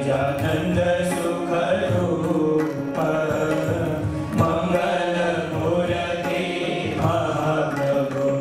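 Hindu devotional chanting sung to musical accompaniment, with the audience clapping along.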